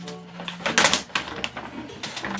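Brown paper delivery bag crinkling and tearing as its sealed top is pulled open, in an irregular run of crackles loudest just before the one-second mark.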